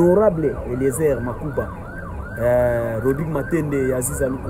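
A siren-like wail sweeping up and down about three times a second, with a voice over it that holds one note about two and a half seconds in.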